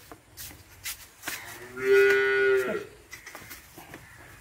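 A Jersey cow mooing once: a single call of about a second, held on a steady pitch and dropping at the end. A few faint clicks come before it.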